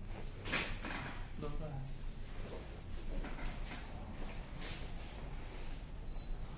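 Handling noises as a patient is shifted on a padded treatment table: a sharp rustle or knock about half a second in, then a few softer rustles, over a low steady hum. A brief murmured voice comes in around a second and a half.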